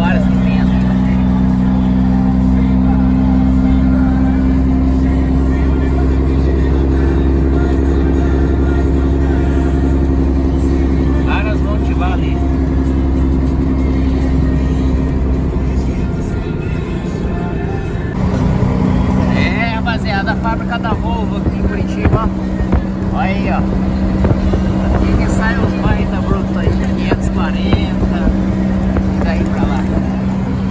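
Scania L110 truck's six-cylinder diesel engine running at a steady cruising note, heard from inside the cab; about halfway through the note breaks off and resumes at a slightly different steady pitch. Indistinct voices or music sound over the engine in the second half.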